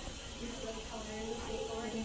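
Steady hiss from dental equipment at the chair, with faint voices under it.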